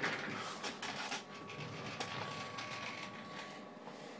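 Ameritron AL-82 linear amplifier's cooling fan running as a quiet, steady hiss, with a few light clicks. A faint steady high whine joins it about a second in.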